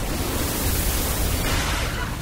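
Pressurised steam jets venting from pipes: a loud, even hiss with a low rumble underneath, starting abruptly.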